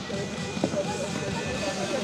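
Indistinct voices with background music. There are no clear hoof beats.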